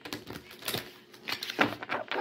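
A deck of tarot cards being shuffled by hand: a quick run of crisp card clicks, then a second run near the end.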